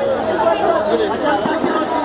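Chatter of several vegetable-market vendors and shoppers talking at once, with no single voice standing out.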